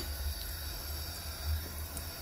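Kitchen background noise: a low steady hum with a faint even hiss, with no distinct sound event.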